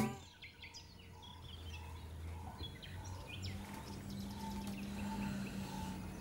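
Quiet outdoor ambience with birds chirping now and then over a low steady hum. From about halfway, a short note repeats a few times a second.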